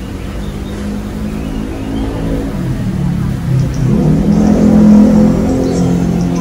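Audio playing through a Baretone portable trolley speaker, mostly low, shifting tones, getting steadily louder up to about five seconds in.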